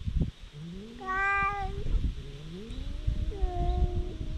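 Two stray cats yowling at each other in a fight standoff, trading long, drawn-out threat calls, some rising in pitch. Their voices overlap in the second half.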